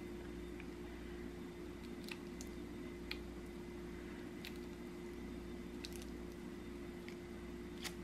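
Quiet room with a steady electrical hum, and a few faint light clicks of a plastic spatula as it scoops glitter texture paste from a jar and spreads it over a stencil.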